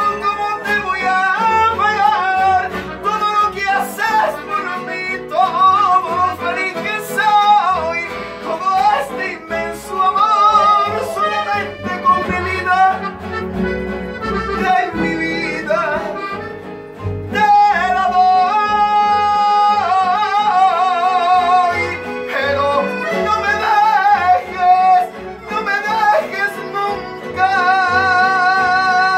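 Live estudiantina playing: strummed guitars and small plucked strings with accordion, and a wavering vocal melody carried over them.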